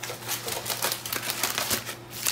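Plastic-wrapped craft packs being handled: a quick, uneven run of small crinkly clicks and rustles.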